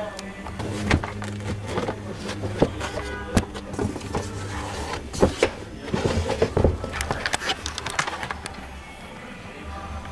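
A grey pre-moulded trunk carpet being handled and pressed into place: rustling and scraping with several sharp knocks, the loudest around the middle, over background music and a steady low hum.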